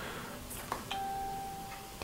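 A faint, single steady tone starts suddenly about a second in and holds to the end, just after a small click.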